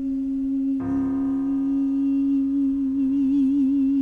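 A soprano voice holds the song's final long note on an "ee" vowel over piano accompaniment. A piano chord is struck about a second in. Near the end the held note takes on a wide vibrato.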